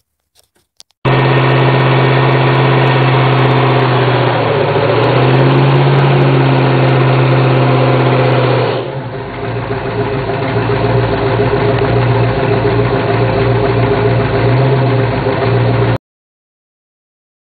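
Ford Mustang Mach 1's V8 held at high revs through a burnout, with a steady note. About nine seconds in the tone drops and roughens, then builds again.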